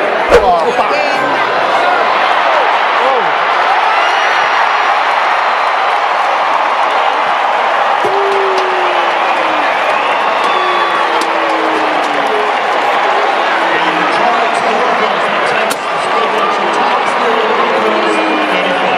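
Stadium crowd in the stands: many voices talking and calling out at once in a steady din, with a sharp thump about a quarter of a second in.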